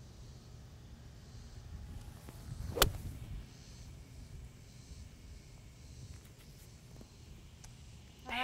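A golf club striking a ball once, a single sharp click about three seconds in, on a smooth, choked-down three-quarter partial swing. Faint steady low background noise otherwise.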